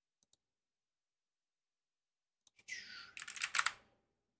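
Computer keyboard typing: a quick run of keystrokes in the second half, just after a short falling hiss, with a faint single click near the start and near silence before.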